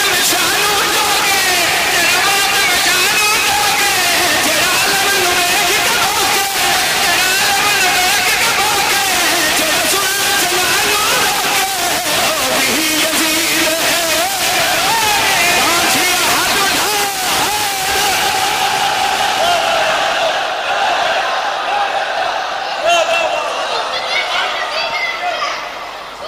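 A man reciting an Urdu qaseeda in a loud, chanted delivery into a microphone, his voice rising and falling in long sung lines over crowd voices. A little before the end he holds one long note, and the crowd's voices come up as it fades.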